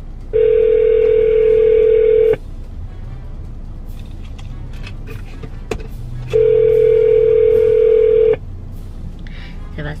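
Telephone ringback tone: two steady two-second tones about six seconds apart, the signal that the line is ringing at the other end while the caller waits for an answer.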